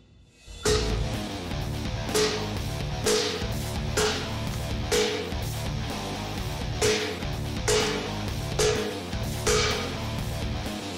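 Repeated chops of a steel war golok blade biting into a large hardwood log, about nine sharp strikes roughly a second apart, in a blade strength test. Heavy-metal guitar music plays under the strikes.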